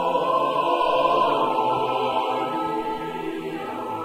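A choir singing long held chords, swelling to its loudest about a second in and then easing slightly.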